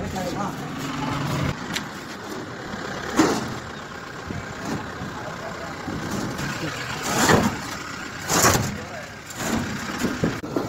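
A heavy metal paper plate making machine being shifted about on a truck bed: knocks and scrapes of metal on the truck's floor over a steady low rumble, with the loudest about three seconds in and twice more in the latter part.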